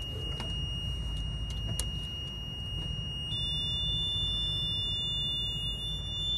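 Multimeter continuity beeper sounding a steady high-pitched tone, with a second, slightly higher tone joining about three seconds in, over a low electrical hum and a couple of light clicks. The continuity beep holds after the annunciator is powered on: its watchdog contact is not changing over, which the technician takes for a faulty card.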